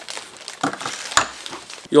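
Thin plastic wrapping crinkling and rustling as it is handled, with a single thump a little after a second in.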